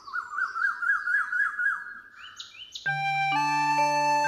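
A bird chirping in a quick run of short rising notes, about four a second for two seconds, followed by a few higher rising calls. Soft music with held tones and a low bass note comes in about three seconds in.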